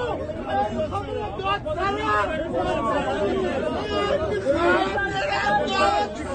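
Several men talking and shouting at once, a continuous overlapping babble of voices.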